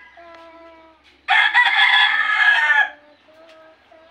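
A rooster crowing once, a loud, harsh call about a second and a half long that starts a little over a second in.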